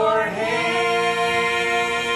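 A man and three women singing a gospel song together through microphones, holding one long note from about half a second in.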